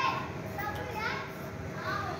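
Children's voices calling and shouting in the background, several short rising-and-falling cries overlapping, over a steady low hum.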